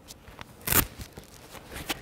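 A short rip of a Velcro strap being pulled open on a plastic cervical collar as it is taken off, a little under a second in, among faint clicks and rustles of the plastic being handled.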